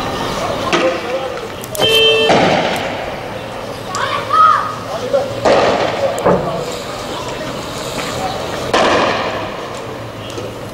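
People shouting in a street clash, broken by several loud bangs as riot police fire tear gas.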